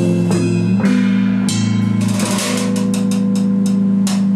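Bass guitar and drum kit playing instrumental rock: low bass notes ring and hold under cymbal and drum strikes, with a quick run of drum hits, about five a second, in the second half.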